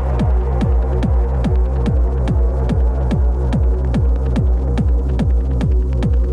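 Techno playing from a DJ mix: a steady four-on-the-floor kick drum at about two and a half beats a second over a sustained deep bass tone, with short hi-hat ticks between the kicks.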